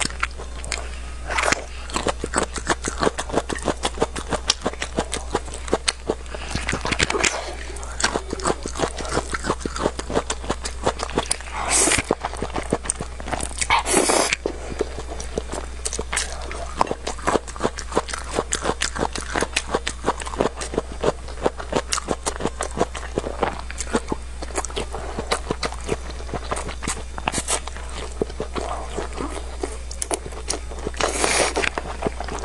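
Close-miked eating: wet chewing, lip smacks and quick mouth clicks from someone eating spicy instant noodles and quail eggs, with three longer, louder slurps of noodles spread through. A steady low hum runs underneath.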